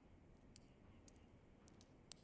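Near silence: faint room tone with a few small, sharp high-pitched clicks in the second half.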